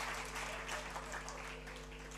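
Faint scattered applause from a lecture audience, dying away, over a low steady electrical hum.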